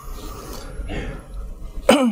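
A single short, loud cough near the end, over faint room noise.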